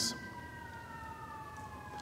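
A faint, high whine of a few steady tones that glide slowly down in pitch, over quiet room tone.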